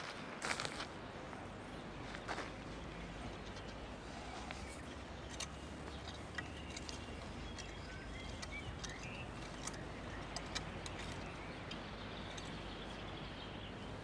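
Garden rake being worked through loose soil to level a flower border: faint, scattered scratches and taps of the tines over a steady low hum.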